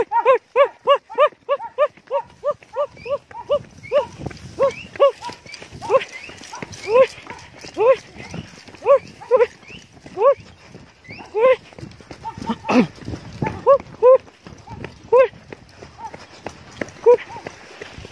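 Men's rhythmic shouted war cries, short rising-and-falling 'hu' calls. They come about three a second at first, then slower and more spaced out, and die away near the end. Under them are running footsteps on a stony path, with one sharp knock about two-thirds of the way through.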